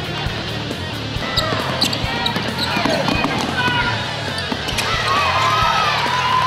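Basketball game sound in a gym: sneakers squeaking in short chirps on the court and a ball bouncing, with voices, over background music.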